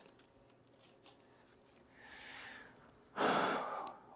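A man's breathing in a pause between words: a faint breath about two seconds in, then a louder, short intake of breath near the end, just before he speaks again.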